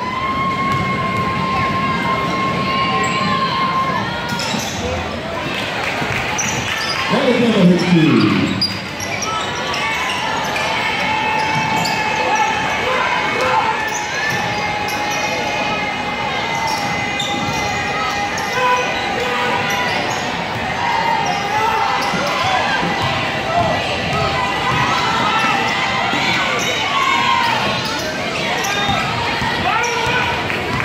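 Indoor gym sound during a basketball game: a basketball bouncing on the hardwood, short squeaks, and a crowd of spectators talking and calling out, with a loud falling cry about eight seconds in.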